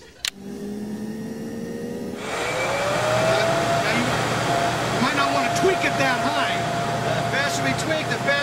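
Blower door fan switched on with a click: a low motor hum at first, then about two seconds in a loud rush of air as the fan spins up, its whine rising in pitch and then holding steady.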